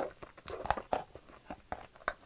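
A person biting into and chewing a firm peach close to the microphone, giving several sharp crunches at irregular intervals.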